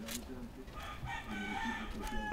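A rooster crowing once, a single drawn-out call of about a second in the second half.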